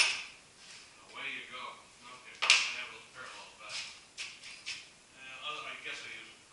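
A single sharp metallic clank about two and a half seconds in, with a smaller knock at the start, over indistinct talk in the background.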